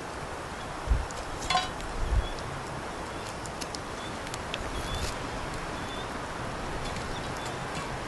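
Metal tongs setting charcoal briquettes on a cast-iron Dutch oven lid: a few light clicks and knocks scattered over a steady outdoor background hiss.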